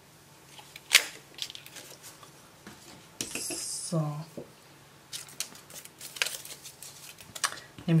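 Small handheld paper punch snapping through white cardstock with one sharp click about a second in, followed by smaller clicks and taps of paper and craft tools handled on a desk and a short rustle of paper.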